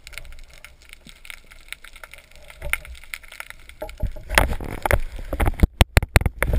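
Underwater noise picked up through a speargun-mounted GoPro's waterproof housing while a speared sea bream is handled on the shaft. Faint scattered clicks and crackles give way, about four seconds in, to louder irregular knocks and sloshing.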